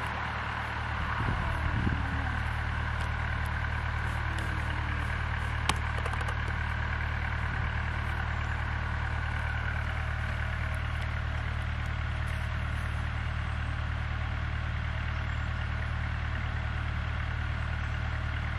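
Steady low motor hum, even throughout, with a single sharp click about six seconds in.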